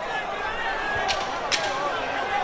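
Boxing arena crowd, a steady wash of voices and shouting, with two sharp smacks about half a second apart near the middle.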